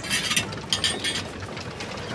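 A bunch of raw asparagus stalks handled on a plate: a few short scraping rustles in the first second, then quieter handling noise.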